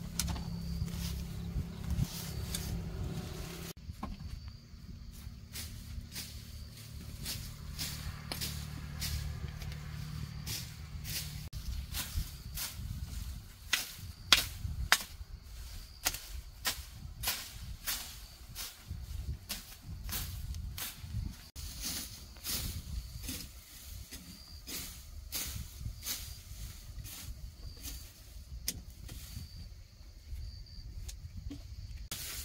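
Machete blade scraping and chopping through dry grass, weeds and soil in irregular strokes, the blade striking the ground with sharp scrapes and knocks.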